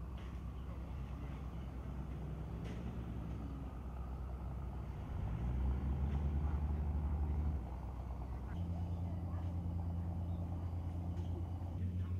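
A motor vehicle engine running low and steady. About five seconds in it revs up and runs louder for a couple of seconds, then drops back and settles into a steady idle.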